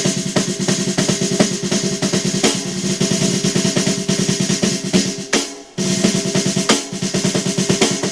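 Snare drum sound triggered through an electronic drum module by a Roland RT-30R dual-zone clamp-on trigger, played as fast rolls and strokes with a short pause about five and a half seconds in. The strokes come out with little variation in dynamics, showing how the trigger responds.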